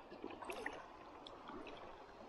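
Faint sloshing of shallow creek water around wading feet and hands, with a few small splashes about half a second in.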